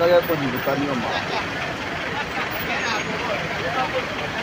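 Steady traffic noise from cars crawling through floodwater on a road, with bystanders talking, their voices loudest in the first second.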